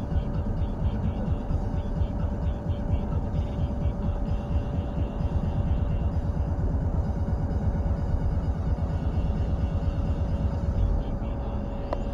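Road and engine rumble of a moving car heard from inside the cabin, steady throughout, with a thin steady whine running under it.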